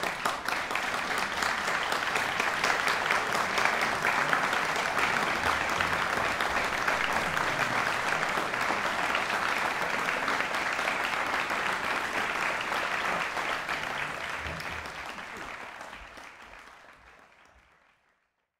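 Concert audience applauding: dense, steady clapping that starts sharply and fades out over the last few seconds.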